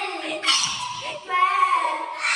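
Children's high-pitched voices laughing and squealing, with a drawn-out high squeal in the second half.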